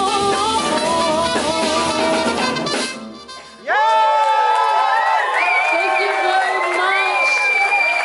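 Live band with a singer playing loud until about three seconds in, then the bass and drums drop out at once. After a brief dip, held, wavering high tones ring on over crowd cheering.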